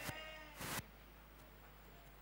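A faint, wavering voice trails off over the first half second, and a brief burst of noise follows. The rest is near-silent room tone.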